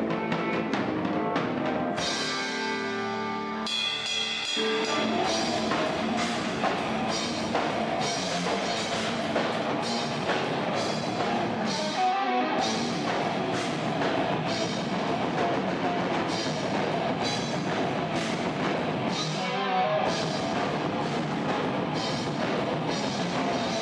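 Live progressive death/thrash metal band playing: distorted electric guitars, bass and a pounding drum kit, loud and dense, with two short breaks in the low end about twelve and twenty seconds in.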